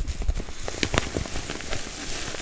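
Close-miked handling of a zippered cosmetics pouch with a satin-like lining: rustling fabric with a quick run of small crackles and clicks.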